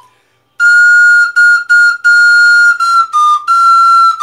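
Plastic recorder playing a melody: about half a second of silence, then a run of repeated notes on one high pitch. Near the end it steps a little lower twice and comes back up to the first note.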